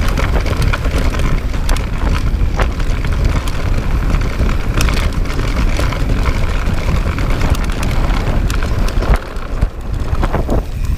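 Mountain bike descending a dirt trail: tyres rumbling over the ground and wind buffeting the microphone, with frequent short rattles and knocks from the bike over bumps.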